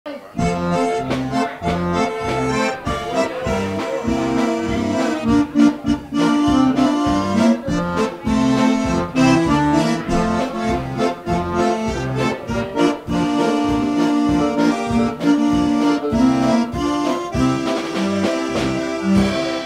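Button concertina playing a lively instrumental tune, chords and melody over a steady, regular bass beat, with no singing yet.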